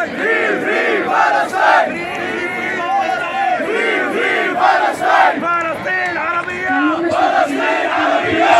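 Large crowd chanting slogans together, many voices shouting in a loud, repeating rhythm.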